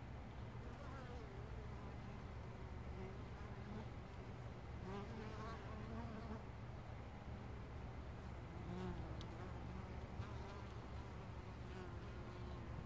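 Carniolan honey bees buzzing as they fly in and out of a hive entrance, several faint passing buzzes whose pitch wavers as the bees come and go.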